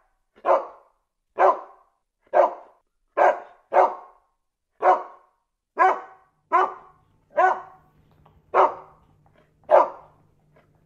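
A dog barking repeatedly in short, single barks, about one a second.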